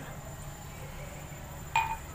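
A faint steady low hum, then about three-quarters of the way through a single sharp clink with a brief ring as a drinking glass is set down.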